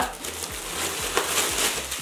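A clothing package rustling and crinkling as it is opened by hand, in uneven bursts, over soft background music.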